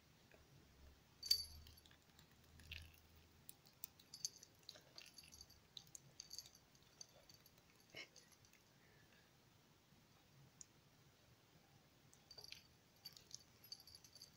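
Faint, irregular wet clicks of a cat's tongue licking water from the freshly watered soil and leaves of a potted plant, with a sharper click about a second in.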